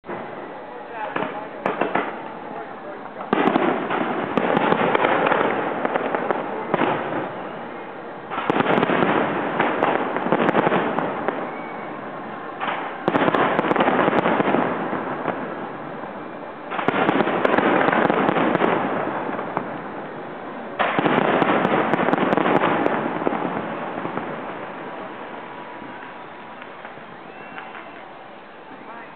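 Fireworks display: five large shells go off one after another, each starting suddenly and followed by a few seconds of dense crackling that slowly dies away.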